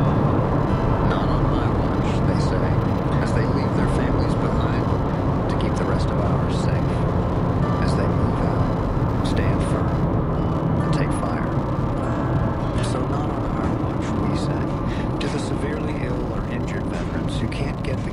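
Steady road and engine noise inside a moving car's cabin, with faint talk from the car radio underneath.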